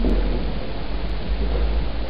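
Steady hiss with a low hum underneath: the background noise of a room recording, with no speech.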